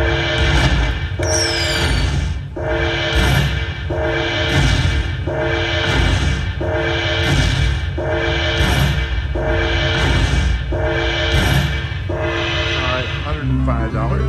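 Dragon Link slot machine's bonus-tally music: a repeating chiming phrase over a low pulse, about once every second and a quarter, as each coin orb's value is added to the bonus total. Just before the end it switches to a different jingle as the winner screen comes up.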